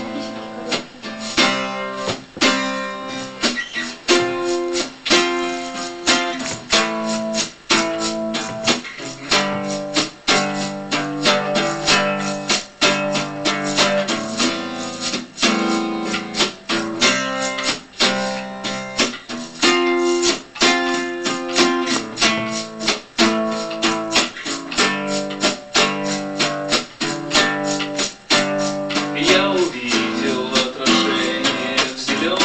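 Steel-string acoustic guitar strummed in a quick, steady rhythm, an instrumental passage with no singing until a voice comes in near the end.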